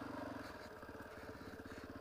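Dirt bike engine running at low, steady throttle on a trail, easing off slightly about half a second in.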